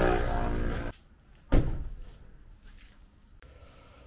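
A car running along the road, engine hum and road noise, cutting off abruptly about a second in. Then a quiet outdoor background with a single sharp thump about half a second later.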